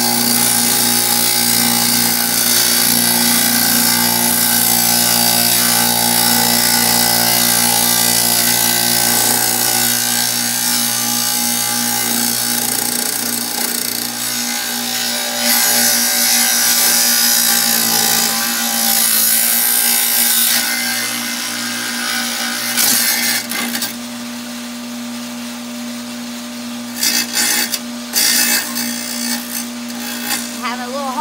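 Kobalt wet tile saw running, its blade cutting a firebrick: a steady motor hum under a harsh, hissing grind. About 24 s in the grinding eases off, with a few short bursts of it near the end.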